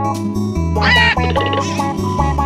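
Cartoon duck quacking once, briefly, about a second in, over background music.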